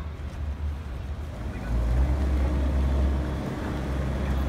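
Outdoor city street noise dominated by a low rumble, which grows louder about a second and a half in.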